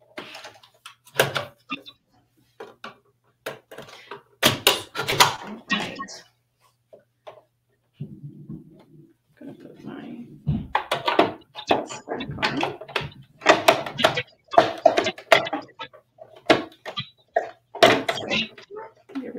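Scattered clicks and knocks of hands working a Juki MO-1000 air-threading serger, readying it to sew a stitch.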